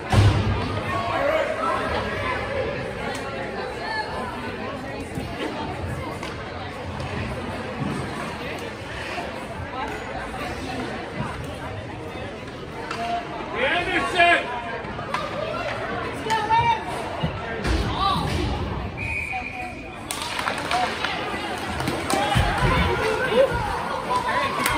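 Spectators' voices and chatter in an ice hockey rink during a stoppage in play, with a brief high steady tone a little before the end.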